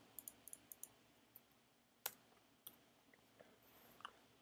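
Faint clicks of a computer keyboard and mouse: a quick run of small clicks in the first second, then single sharper clicks about two seconds in and near three seconds.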